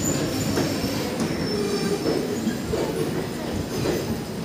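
Indian Railways passenger coaches rolling past at a platform, with a steady rumble of wheels on rails, irregular clacks over the rail joints and thin, high wheel squeals. The sound begins to fade near the end as the last coach goes by.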